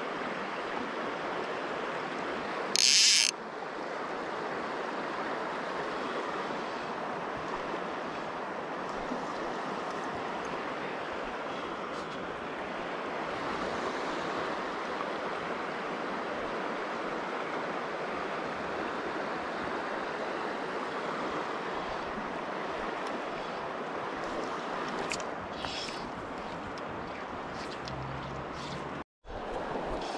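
River water running over stones in a steady rush. About three seconds in there is a short, loud hiss, and the sound drops out for a moment near the end.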